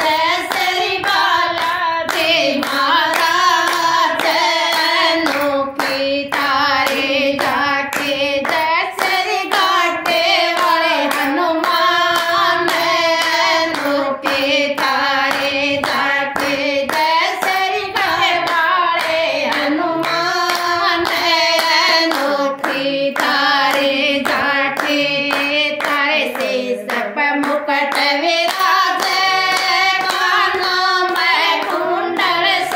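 A group of women singing a Hindi devotional bhajan together, keeping time with a steady beat of handclaps.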